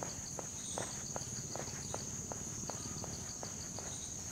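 Insects chirping outdoors: a steady high-pitched drone with a quicker pulsed chirp just below it, and faint regular ticks about two or three times a second.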